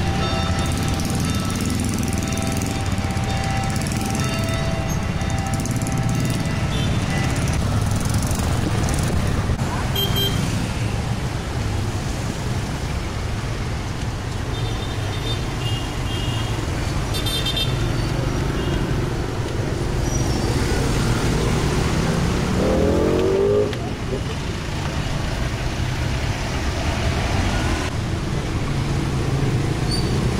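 Busy street traffic: motorcycles, motorcycle tricycles and cars running and passing at an intersection, a steady engine noise throughout. About three quarters of the way through, one engine revs up with a rising pitch.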